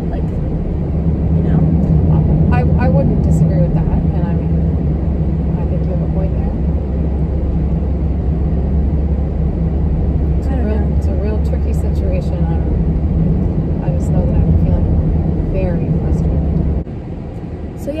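Road and wind noise inside a moving car's cabin with the sunroof and driver's window open: a steady low rumble with a low hum running through it, under faint talking. The rumble drops away suddenly near the end.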